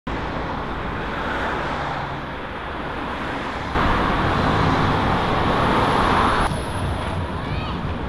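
Outdoor city ambience: a steady rush of traffic noise, cut abruptly to a louder, denser stretch about four seconds in and changing again a couple of seconds later, with a few short chirps near the end.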